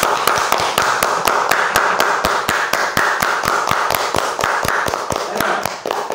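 Hand clapping in a steady, even rhythm of about four claps a second, with a steady rushing noise behind it.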